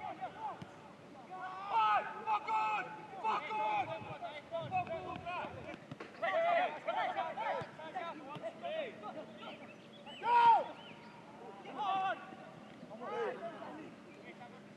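Footballers shouting short calls to one another during play, scattered voices across the pitch, with one loud shout about ten seconds in.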